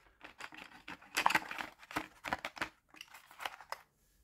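Irregular light clicks, taps and rustles of hands handling wooden colored pencils and a cardboard pencil box on a wooden table, with a couple of longer scraping rustles.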